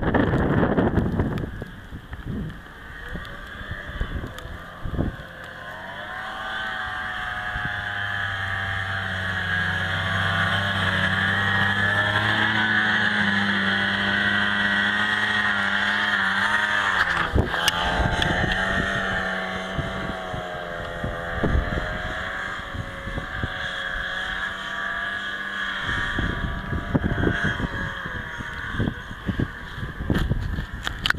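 Yamaha Enticer 400 snowmobile engine coming closer through deep snow. Its pitch wavers up and down with the throttle, it is loudest as it passes close about halfway through, and it then fades as it rides away. Wind buffets the microphone at the start and again near the end.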